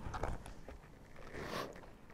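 Faint rustling and scraping of bodies and clothing shifting on a grappling mat as a kimura grip is locked in, with a couple of brief louder rustles near the start and about a second and a half in.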